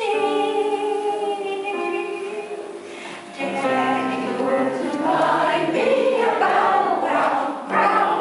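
Music-hall song being sung: long held sung notes at first, then from about three and a half seconds in a fuller sound of many voices singing together.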